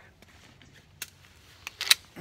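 Glock pistol being loaded with an empty magazine. There is a faint click about a second in, then a quick run of sharp clicks near the end as the magazine seats in the grip.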